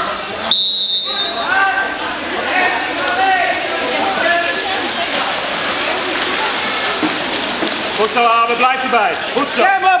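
Short, shrill referee's whistle blast about half a second in, over the noise of a water polo game in an indoor pool: players and spectators shouting and water splashing, with the shouts loudest near the end.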